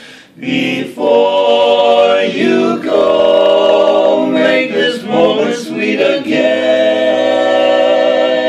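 A small group of men singing a cappella in harmony, several voices holding long sustained chords. After a short breath right at the start, the singing comes back in about a second in and carries on through a few chord changes.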